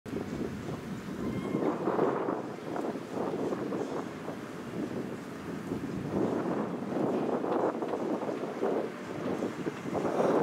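Wind buffeting the microphone, rising and falling in gusts, with stronger gusts about two seconds in and again past the middle.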